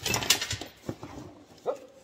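Foam packing peanuts and cardboard rustling and crackling as a hand digs into a shipping box, loudest in the first half-second, followed by a few light clicks and one short squeak near the end.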